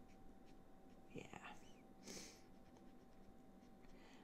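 Near silence, with faint soft strokes of a Copic marker tip brushing across card stock, most noticeable about one and two seconds in.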